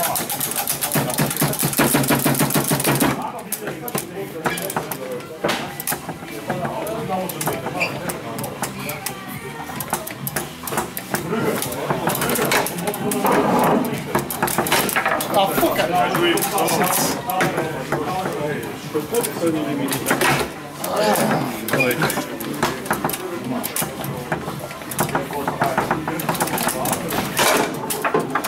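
Foosball table in play: sharp, irregular clacks of the ball being struck by the figures and hitting the table walls, with the rods knocking, over people talking in the room and background music.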